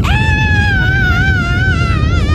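Deep, steady rumble of a bass-heavy earthquake sound effect. Over it a person lets out one long, high, wavering scream that starts right at the beginning.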